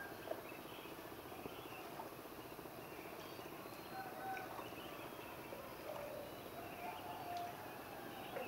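Quiet outdoor ambience: a steady faint hiss with scattered short, faint bird calls.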